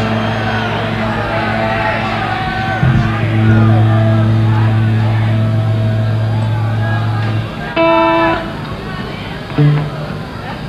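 Large concert crowd cheering and whistling between songs over a steady low held tone from the stage that stops about seven and a half seconds in; a short sustained instrument note sounds just after it.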